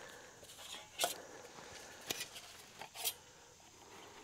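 Thin metal panels of a flat-pack puzzle camp stove being handled and slotted together, giving a few sharp metallic clicks and clinks spread over the few seconds.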